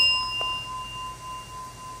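A small metal bell struck once, ringing with a clear high tone that fades slowly; its higher overtones die away within the first second.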